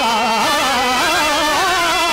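A man singing a Telugu drama padyam in a slow, ornamented Carnatic-style line, his pitch curling and wavering through long held syllables over steady sustained instrumental notes.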